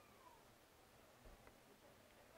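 Near silence: faint open-air background, with a faint falling call right at the start.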